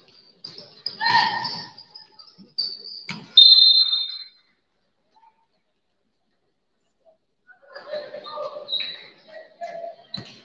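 Basketball court sounds with a shout, then a referee's whistle blown once for about a second, a little over three seconds in, the loudest sound here. The sound then drops to silence for about three seconds before voices call out near the end.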